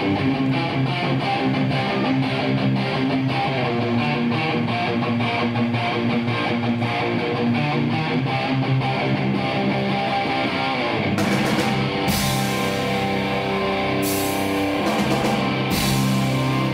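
Live hard rock band playing: a strummed electric guitar riff over bass, with drums and cymbals coming in about eleven seconds in.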